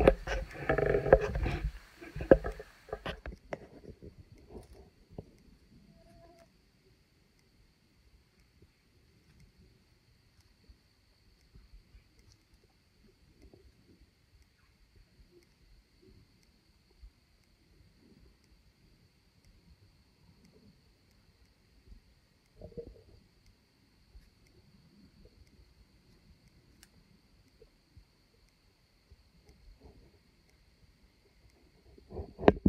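Close rustling and knocks from the camera being handled against clothing for about three seconds, then quiet woods: a faint steady high-pitched hum with scattered faint ticks and a brief soft rustle about 23 seconds in.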